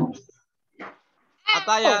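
A child's voice over a video call: a short call about a second in, then a drawn-out, high call of the letter 'E' near the end.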